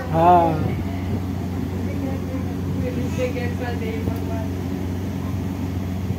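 A steady low hum fills the room throughout, with a short, loud high-pitched voice call in the first second and faint voices about three seconds in.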